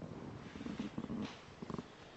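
Quiet room noise in a hall, with a few faint, brief low sounds and soft ticks.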